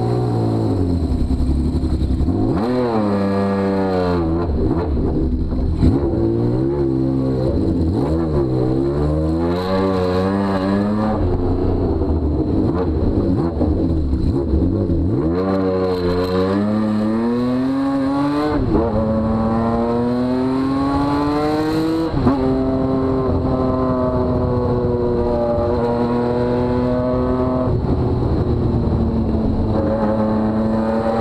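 Honda CBX 1000's inline-six engine through open pipes, accelerating through the gears. Its pitch climbs in several rising runs, each cut off by a sharp drop at a shift. In the last third it settles to a steady cruise.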